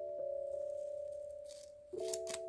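Gentle background music of held notes, fading toward the end before a new chord starts. A faint snip of scissors cutting paper tape comes about one and a half seconds in.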